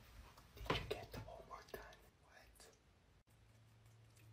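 A person whispering faintly for about the first two seconds.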